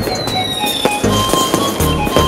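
Background music with a steady beat, with fireworks popping and crackling through it in several sharp bangs.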